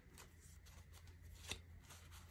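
Faint handling of an oracle card deck: soft flicks and rustles of cards being counted through, with one sharper card click about one and a half seconds in.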